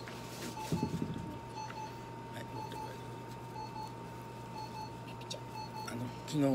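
Short electronic beeps about once a second from a low-level laser therapy unit emitting, over a steady low hum and a faint continuous tone. A brief rustle of handling about a second in.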